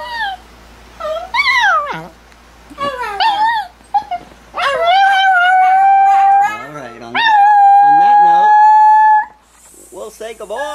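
A small dog howling: short rising and falling yowls in the first few seconds, then two long, steady howls, one from about five to six and a half seconds in and a second from about seven to nine seconds in.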